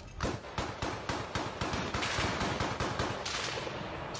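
Small-arms gunfire: a rapid, irregular string of shots, several a second, some running together like automatic bursts.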